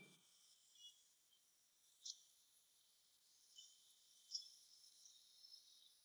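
Near silence: faint night ambience of crickets chirping high and thin, with a couple of brief, slightly louder chirps.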